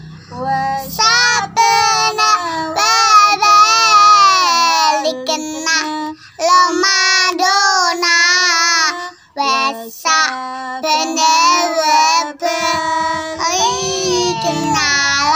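Small girls singing an Islamic children's song in high voices, joined by a woman, with no instruments; the phrases break off briefly twice along the way.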